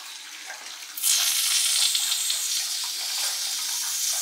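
Steady hiss of a child's aerosol foam bath soap being sprayed, starting suddenly about a second in.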